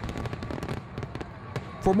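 Fireworks crackling and popping in rapid, irregular succession.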